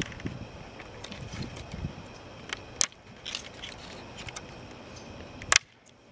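Scattered sharp clicks and light rattles of a plastic push-in trim fastener and the plastic spoiler and brake-light housing being handled, over a steady outdoor background; the loudest click comes just before the sound cuts off suddenly near the end.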